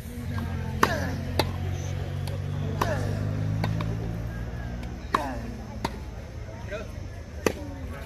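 Tennis rally on a grass court: sharp racket-on-ball hits and ball bounces, about seven in all, coming in pairs every two seconds or so. A short vocal grunt follows several of the hits.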